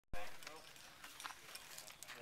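A brief indistinct voice just after the start, then scattered light clicks and taps, the small handling noises of climbers and their gear at the foot of the rock.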